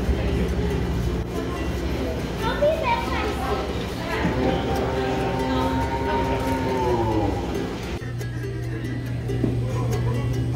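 Music with voices, including one long held note near the middle, over a steady low hum; about eight seconds in the sound changes to a steadier low hum.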